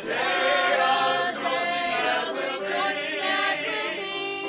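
A small church choir of men and women singing together, holding long notes that move from one pitch to the next without a break.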